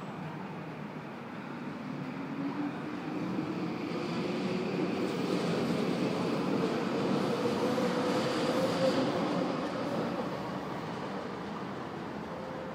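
SkyTrain train at the elevated station, its motor whine rising slowly in pitch as it accelerates. The rumble swells through the middle and then eases off near the end.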